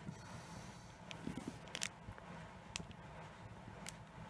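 Faint crinkling of a thin clear plastic bag being handled and folded back, a few soft crackles spread through the quiet.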